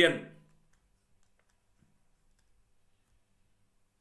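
A man's voice finishing a word, then near quiet with a few faint, scattered clicks of a stylus on a writing tablet as an answer is circled and ticked.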